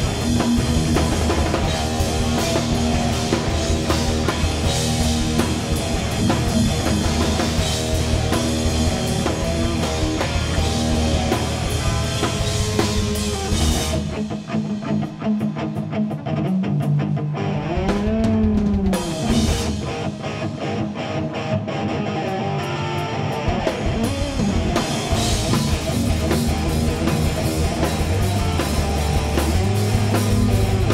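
A live hard-rock band playing an instrumental passage on electric guitar, electric bass and drum kit. About halfway through, the bass and drums drop out for several seconds, leaving mostly guitar with bent notes, and then the full band comes back in.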